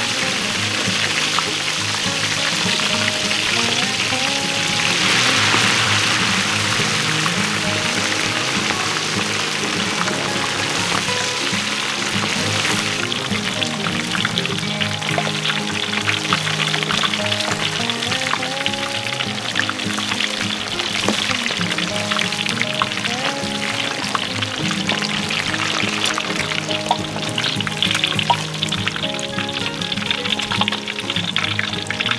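Snakehead fish pieces deep-frying in a wok of hot oil: a continuous sizzle with scattered crackling pops, as hot oil is ladled over the fish. Background music with a melody plays throughout.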